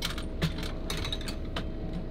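Anchor chain clinking as a stern anchor is hauled aboard by hand: a few scattered metallic clinks over a low steady hum.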